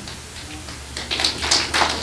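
An audience starts clapping about a second in, scattered claps quickly thickening into applause.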